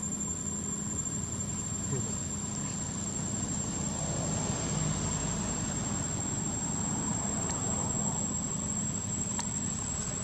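Crickets trilling in one steady, high, unbroken note, over a low steady hum.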